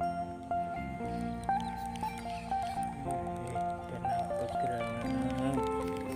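Background music: a melody of held notes changing in steps.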